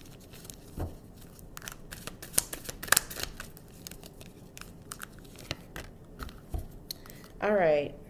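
A deck of oracle cards being shuffled and handled: irregular papery flicks and snaps of card stock, busiest in the first few seconds. A brief voiced sound comes near the end.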